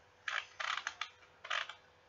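Computer mouse being worked at a desk: four short, quiet clusters of clicking.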